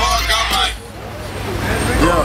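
Men's voices over a low rumble that cut off abruptly less than a second in. Quieter street noise then builds back up.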